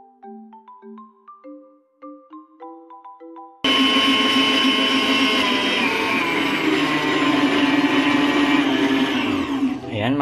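Light mallet-percussion background music, then about a third of the way in an electric stand mixer cuts in loud, its motor running steadily at high speed as the wire whisk beats egg whites and sugar into meringue.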